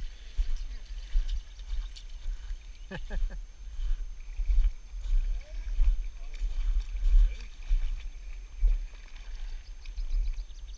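Shallow river water splashing and sloshing around waders as people wade, with wind buffeting the microphone in uneven low gusts. A short voice sound comes about three seconds in.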